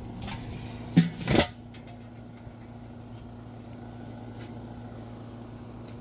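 Metal lid of a Weber kettle grill being set on: a light knock, then two sharp metal clanks about a second in. A steady low hum carries on underneath.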